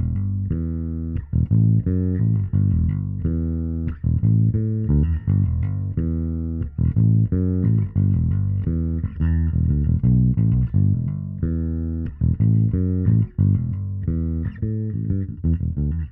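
Solo electric bass guitar playing a busy riff of short plucked notes in quick succession, with no other instruments.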